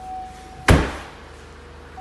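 Vauxhall Astra hatchback's tailgate being shut: one loud slam about two-thirds of a second in, with a short ring after it.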